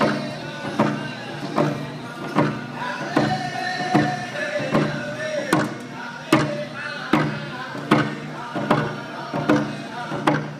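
Frame hand drums struck together in a steady beat, a little over one stroke a second, with men's voices singing a hand drum song over them.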